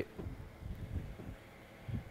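Faint sizzling of serrano chilies blistering on a hot carbon steel griddle, their skins starting to split from the heat.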